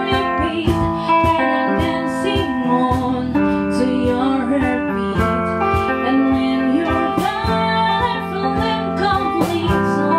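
A small band playing a song: a woman sings over strummed guitar and bass guitar, with a steady percussive beat.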